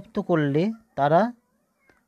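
Speech: a man's voice in a few drawn-out syllables whose pitch slides up and down, with short pauses between.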